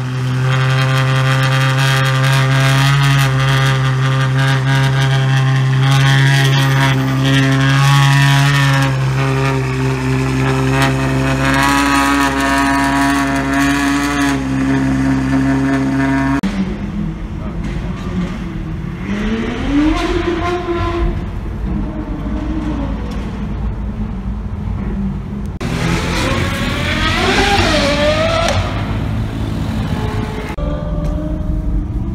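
Ferrari 812's V12 idling steadily, then pulling away about 16 seconds in, with the engine note rising and falling as it drives off.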